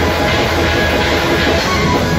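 Heavy metal band playing live: distorted electric guitars, bass guitar and drum kit, dense and at a steady full loudness throughout.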